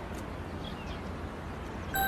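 Outdoor background noise: a steady low rumble and hiss, with a few faint, short high chirps.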